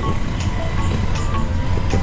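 Faint background music with a few held notes over a steady low rumble.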